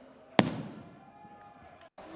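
A single sharp bang of a firework rocket bursting overhead, about half a second in, with its echo rolling away and fading over the next second.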